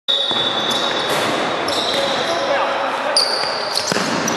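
Indoor futsal play in an echoing sports hall: voices calling, high squeaks, and the ball struck with a sharp knock near the end.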